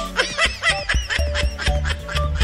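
A quick run of laughter in the first half, over background music with a steady beat.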